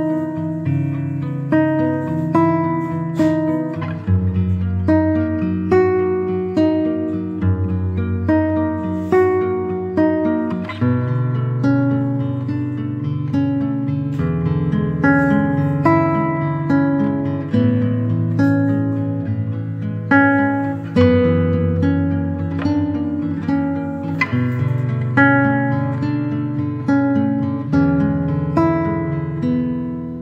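Background music: plucked acoustic guitar playing a steady, gentle strummed pattern.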